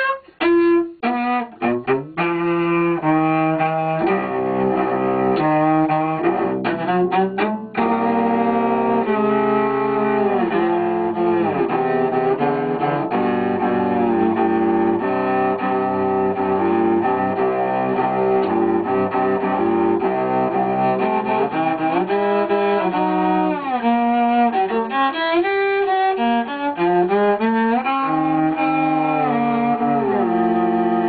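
Solo cello improvisation, bowed. Short, separated notes in the first couple of seconds and again around seven seconds in, then long held notes that move slowly in pitch.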